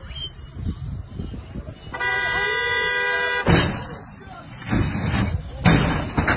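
A vehicle horn sounds steadily for about a second and a half, then a sudden loud crash as the rally Subaru WRX STI comes down off the flatbed tow truck, followed by two more loud bursts of noise.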